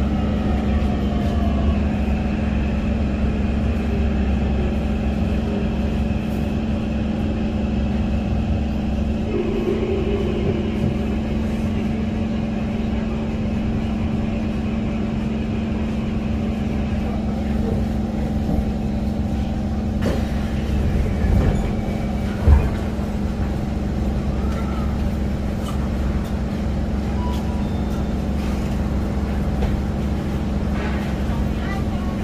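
Interior of a Kawasaki Heavy Industries C151 metro train braking into a station: the traction motor whine falls in pitch over the running rumble. The train comes to a stand with a single thump about two-thirds of the way through, leaving the steady hum of the car's onboard equipment.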